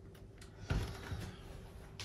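Spray bottle of isopropyl alcohol squirted over freshly mixed epoxy resin to pop surface bubbles: a knock about three-quarters of a second in, then a short, soft hiss that fades.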